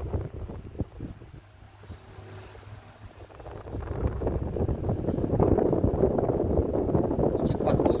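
Wind buffeting the phone microphone, a rough rumble that grows louder about four seconds in.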